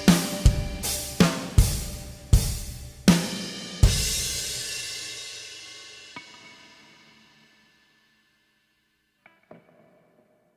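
The closing hits of a post-black metal track: about eight accented drum-kit strikes with cymbal crashes over the first four seconds, then the cymbals ring out and fade away to silence.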